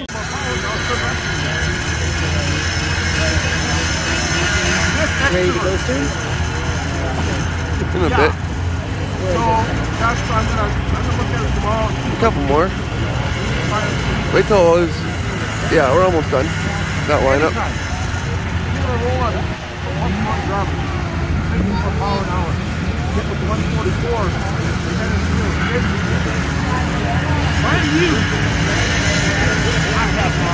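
Vintage snowmobile engines running steadily at the starting line, with people talking close by, mostly in the middle of the stretch.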